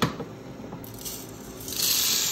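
A knock as the hopper is set onto an Aillio Bullet R1 coffee roaster, then green coffee beans poured from a glass jug into the hopper: a loud rushing rattle of beans that starts near the end. Under it runs the steady hum of the roaster.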